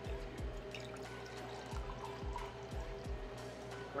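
Wine poured from a bottle into a glass, over background music with a steady beat.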